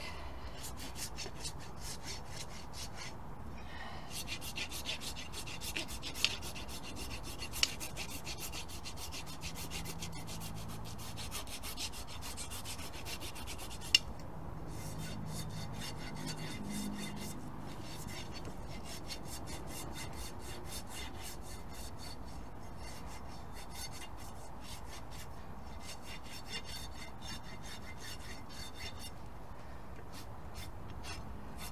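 Hoof rasp filing a horse's hoof in long runs of quick back-and-forth strokes, with short pauses between runs and a few sharp clicks.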